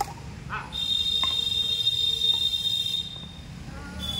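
A badminton racket strikes a shuttlecock once at the start. A steady high-pitched tone then begins just under a second in and lasts about two seconds.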